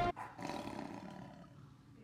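Big-cat roar sound effect that starts as the theme music cuts off and fades away over about a second and a half.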